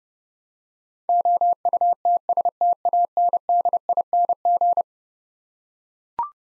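Morse code sent as a single steady tone keyed on and off in dots and dashes at 30 words per minute, spelling the word "outstanding". It starts about a second in and stops about a second before the end.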